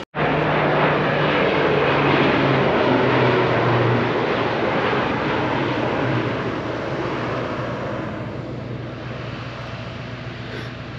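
Crop-duster airplane's engine droning steadily, loud at first and slowly fading over the last few seconds.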